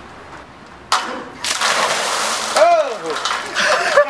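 A cooler of ice water dumped from above splashing down onto a man: a sudden hit about a second in, then a second or so of heavy splashing. He cries out with the cold shock, and laughter starts at the very end.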